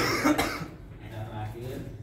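A person's voice: a short, loud vocal outburst twice in quick succession right at the start, then quieter talk.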